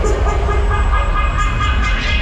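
Loud fairground ride music with a heavy, steady bass, mixed with the rumble of the Break Dance ride's machinery.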